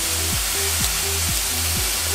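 Beef sizzling steadily as it fries hard in a hot pan, with background music underneath.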